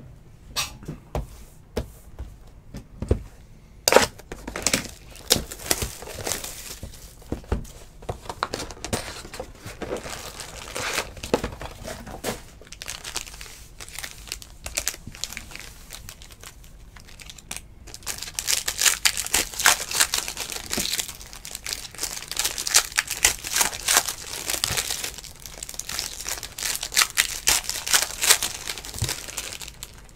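A box of trading card packs being opened and its foil packs handled: scattered clicks and knocks at first, then from a little past halfway a denser, louder crinkling and tearing of wrappers.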